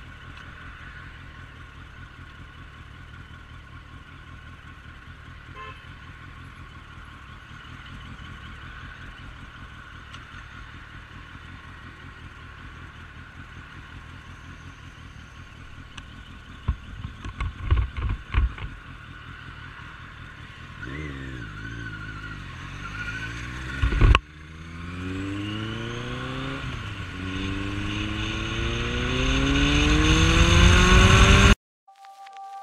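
Suzuki Bandit 1250S inline-four engine running at a low, steady cruise, then accelerating hard from about twenty seconds in. The revs climb in rising sweeps broken by gear changes, one with a loud bang about 24 seconds in. A burst of loud knocks comes a few seconds before the acceleration.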